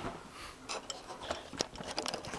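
A run of irregular light clicks and knocks, several a second, from small hard objects being handled.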